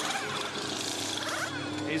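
Race car engines at the track, with pitch rising and falling as they rev and change gear, under a steady wash of circuit noise.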